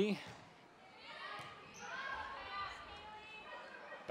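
Volleyball rally in a gymnasium: the ball being struck, with distant high-pitched voices of players and spectators calling out, echoing in the hall.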